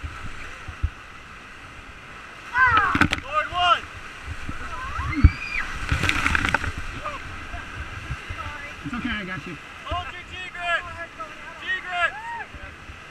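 Whitewater rushing around a paddle raft in a rapid, with rafters letting out high-pitched yells and shrieks. About six seconds in, a wave crashes over the boat in a loud splash.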